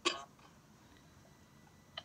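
A man's single short, sharp intake of breath between chanted phrases, fading within a fraction of a second, then a pause of near silence with a faint small click at the end.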